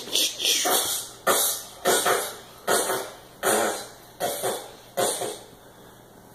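A young child making mouth sound effects in play: about eight breathy, spluttering bursts a little under a second apart, dying away near the end.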